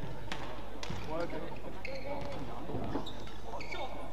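Indistinct voices murmuring over a steady low hall hum, with a few sharp taps on the court floor.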